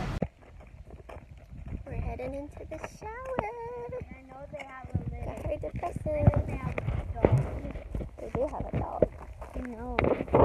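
Young children's high voices chattering without clear words, with footsteps and light knocks from walking, the steps coming more often in the second half.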